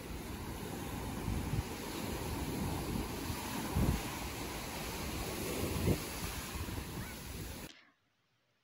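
Small surf breaking and washing up a sandy beach, with wind buffeting the microphone. The sound cuts off suddenly near the end.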